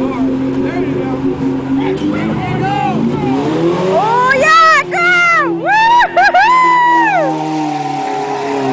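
Truck engine revving under load as a stuck vehicle is towed out of a mud pit, its pitch climbing about three seconds in. Over the second half, high-pitched whoops and yells from onlookers rise and fall several times.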